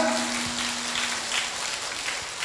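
An audience applauding faintly, an even patter that slowly dies away, over a faint steady low hum.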